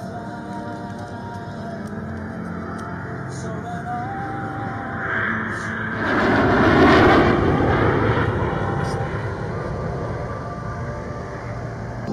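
Background music over the rushing noise of a formation of an F-22 Raptor and World War II propeller fighters flying past. The aircraft noise swells about five seconds in, is loudest around six to seven seconds, then fades.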